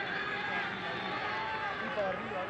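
Stadium crowd noise: many voices shouting at once in a steady wash of sound.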